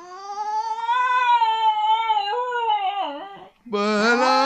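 Cocker spaniel howling along to its owner's humming, in one long high howl that rises a little, holds, then wavers and drops before stopping about three and a half seconds in. Low human humming starts again just before the end.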